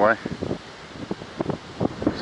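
The end of a spoken word, then quiet outdoor ambience: light wind on the microphone with a few soft, short clicks.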